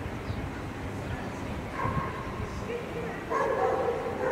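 A dog yelping three times over a steady low hum of traffic. The calls come about two seconds in, just under three seconds in, and the last and loudest runs for about a second near the end.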